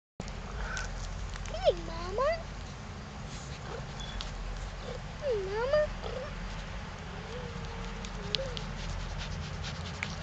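A person's voice making wordless cooing sounds, twice with a swooping dip-and-rise pitch about 1.5 and 5 seconds in, and once more softly near 7 to 8 seconds, over a steady low rumble with scattered light clicks.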